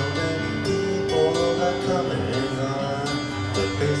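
Live electronic keyboard playing sustained chords over a low bass note, with a male voice singing a melody line about a second in.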